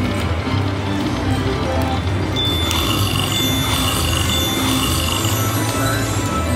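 Aristocrat Buffalo Gold slot machine's free-games bonus music playing over a steady, repeating bass beat as the reels spin. From about halfway through, a high ringing tone with quick repeated chimes sounds while the win meter counts up a payout.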